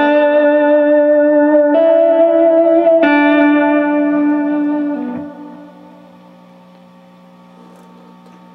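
Clean electric guitar played through a Bogner Alchemist 212 tube combo amp (two 6L6 power tubes, two 12-inch Celestion speakers) set to its ducking delay. A few sustained notes ring, changing about two and three seconds in, then fade out about five seconds in, leaving a faint low hum.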